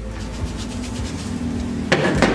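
Face-painting petal sponge being dabbed and rubbed on a face paint cake to load it with paint: a run of faint quick taps over a quiet steady music bed.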